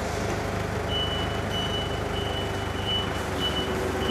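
Nissan 2-ton forklift's engine running steadily as it moves in reverse, its reverse alarm giving repeated high beeps a little under twice a second from about a second in.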